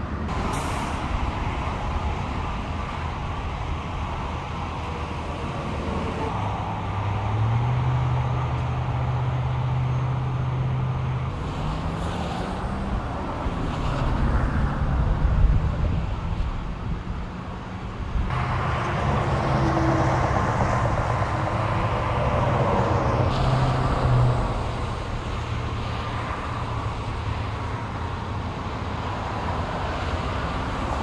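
Heavy trucks' diesel engines running over road noise, one engine's note rising briefly about twelve seconds in, and a second stretch of louder engine sound from about eighteen to twenty-four seconds in.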